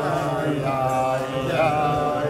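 A group of men singing a slow melody together, voices held on long notes.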